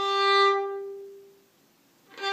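A single bowed fiddle note, G on the D string stopped with the third finger, played with a big, full 'throwaway' stroke. It swells for about half a second, then dies away to near silence.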